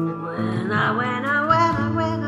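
Music: an electric bass guitar, plucked with the fingers, plays held low notes under a multi-instrument backing arrangement. A higher melody line with gliding pitch comes in about half a second in.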